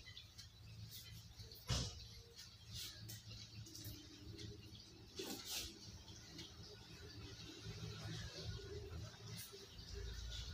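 Faint handling noises of a flat-screen TV being worked on: small knocks, scrapes and squeaks over a low steady hum, with the sharpest knock about two seconds in and a scrape a little after five seconds.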